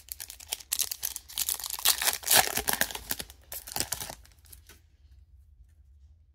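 Foil wrapper of a trading-card pack being torn open and crinkled for about four seconds, then a few faint ticks as the cards come out.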